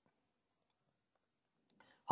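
Near silence: room tone with a few faint, brief clicks, one about a second in, and a short soft noise near the end.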